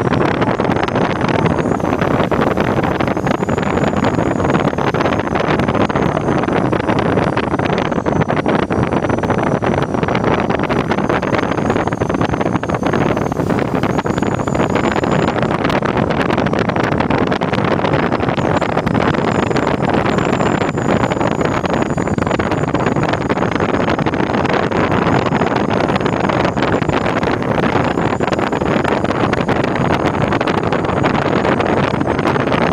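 Steady rush of air over a glider in flight, heard from inside the cockpit, with a faint high whistle that wavers in pitch.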